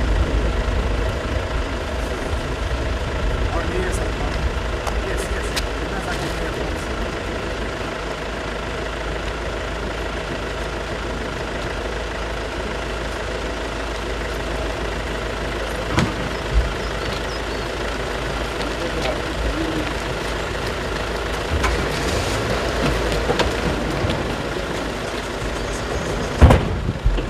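A vehicle engine running steadily at idle, with two sharp knocks about sixteen seconds in.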